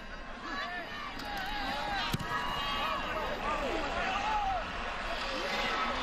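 Stadium crowd noise, many voices calling out at once at a steady level during a field goal attempt. A single sharp thump about two seconds in is the kicker's foot striking the football.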